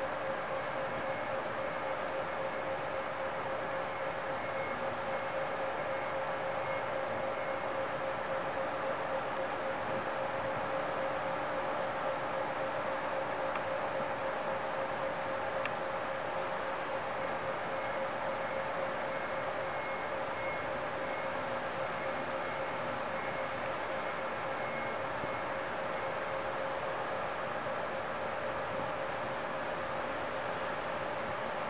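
A steady mechanical hum with a constant mid-pitched tone, unchanging throughout.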